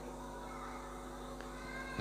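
A pause between spoken phrases: a faint, steady hum with several fixed tones from a microphone and sound system. No other distinct sound stands out.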